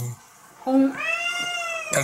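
A domestic cat giving one long meow, a little over a second, that rises and then falls in pitch, starting about a third of the way in.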